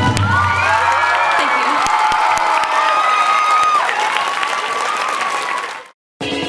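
Live audience applauding and cheering, with wavering whoops above the clapping; the backing music's last low note dies away in the first second or so. The crowd sound fades out just before the end.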